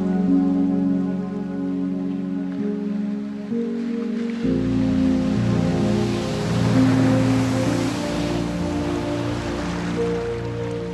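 Slow new-age music of sustained, layered synthesizer chords mixed with nature recordings of water. About halfway the chord changes and a deeper bass note comes in, while a rushing water sound, like a wave surging, swells and then eases.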